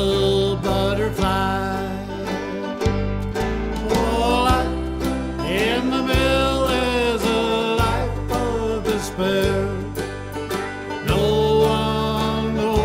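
Country song instrumental break: a banjo picked over held bass notes, with a melody line that slides up and down in pitch above it.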